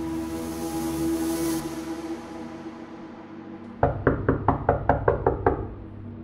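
A steady, droning tone fades away over the first three seconds; then, just under four seconds in, a run of about eight sharp knocks, about four a second, over a low rumble.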